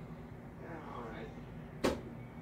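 A faint voice in the middle, then one sharp, short knock near the end, like the phone being bumped or an object set down hard.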